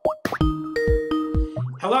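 A short bouncy musical sting: a few quick rising plopping blips, then about a second of held notes over a few low beats. Near the end a man's voice says "Hello".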